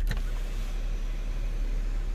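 Steady whirring of the Atlas's power sunshade motor as the shade over the panoramic sunroof retracts, over a low cabin hum.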